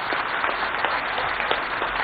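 Audience applauding: many hands clapping steadily.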